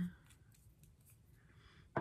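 Faint clicks and a short soft rustle as plastic lipstick tubes are handled and picked up.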